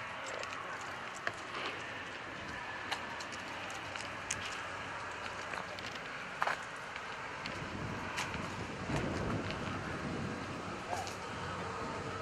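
Faint, steady outdoor background noise with scattered light clicks and taps, somewhat fuller from about halfway through.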